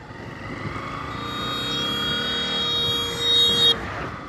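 Riding noise from a moving motorcycle on an open road. A steady, high-pitched tone with many overtones swells over a couple of seconds and cuts off suddenly near the end.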